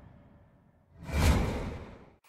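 Intro whoosh sound effect with a deep low hit: the tail of a previous whoosh dies away into a short silence, then a new whoosh swells about a second in and fades out near the end.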